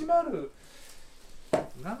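Short bits of men's speech, with a sharp knock about one and a half seconds in.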